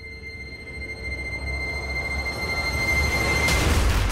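A sound-effect riser in an edited soundtrack: a high ringing tone fades away while a low rumble and a rushing noise swell steadily louder, peaking in the last half second.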